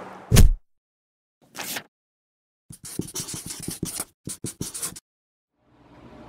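Edited-in sounds over a cut: a heavy thump, a short hiss, then about two seconds of quick scraping clicks, each separated by dead silence.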